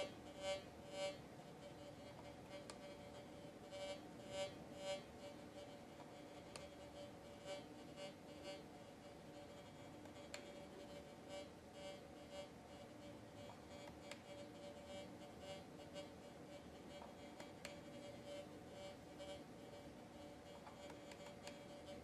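Nokta Fors Core metal detector's faint audio tone, swelling into short beeps about half a second apart in small groups as a brick is moved up and down over the search coil to imitate mineralised ground. The ground-effect beeps grow weaker as the ground-balance value is turned down.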